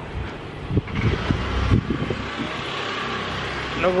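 A motor vehicle passing on the street below, its engine loudest between about one and two seconds in and then fading into a steady hiss of traffic.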